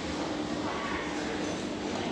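Steady background hum of a busy indoor public space with faint distant voices. No sound from the lift itself, which is out of service.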